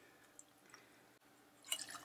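Faint pouring of bourbon from a bottle into a small tasting glass, with a few light drips, then a brief scuff near the end.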